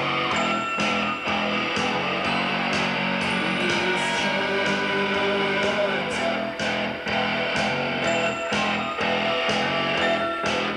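Rock band playing live, led by electric guitar over bass and a steady drum beat.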